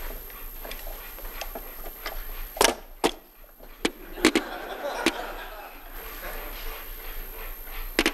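Geiger counter clicking at random intervals, roughly one to two sharp clicks a second with a few louder ones, as it counts natural background radiation: cosmic rays coming down from space.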